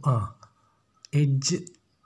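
Speech only: a man talking in two short stretches, the first falling in pitch.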